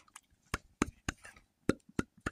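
Irregular sharp taps and clicks against the phone, about six in two seconds with short silences between, as the phone is knocked about during rough play with a cat.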